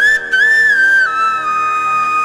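Instrumental interlude of a devotional chant: a high melody line with quick bends and slides that settles onto a long held note about a second in, over a steady drone.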